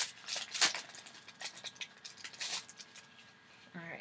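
A small plastic packet being handled and opened by hand: a quick run of sharp crinkles and clicks that thins out and stops with about a second to go.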